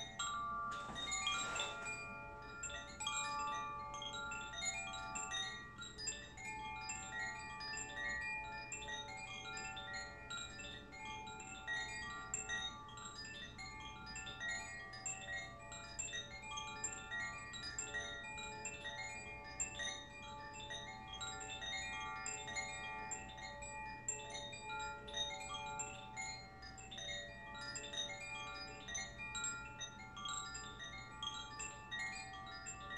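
Gentle chime music: many high, bell-like ringing notes at different pitches, overlapping in a steady unhurried stream. A brief rustling noise comes about a second in.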